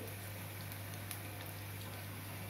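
Wheat biscuit dough pieces deep-frying in a kadai of hot oil: a steady, faint sizzle with a few small pops.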